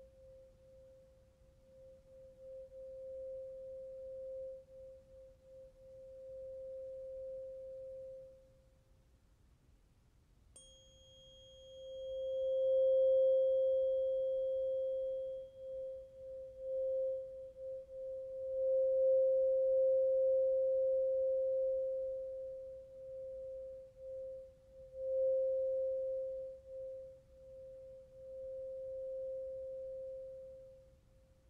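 A tuning fork ringing a steady pure tone that fades away. About ten seconds in it is struck again with a brief bright ping, then the tone rings on, swelling and wavering in loudness.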